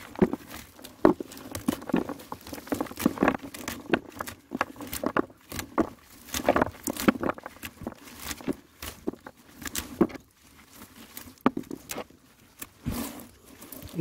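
Peanut pods being pulled and shaken off an uprooted plant's roots, dropping and clattering irregularly into a basin, with rustling of the dry roots and vines.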